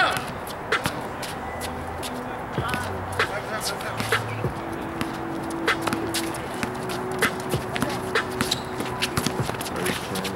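Outdoor pickup basketball game: scattered sharp thuds of a basketball bouncing and sneakers scuffing on a concrete court, with players' voices calling out in the background.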